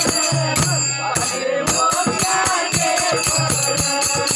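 Devotional bhajan music: hand cymbals clashing in a steady fast rhythm over a harmonium and voices singing. The cymbals drop out briefly about a second in.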